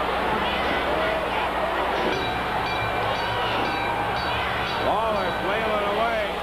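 Wrestling studio crowd shouting and yelling over a steady din, with single voices rising and falling above it, loudest about five seconds in.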